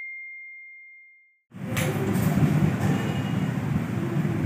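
A single high, bell-like chime dying away over the first second and a half. From about a second and a half in, a steady low rumbling noise follows.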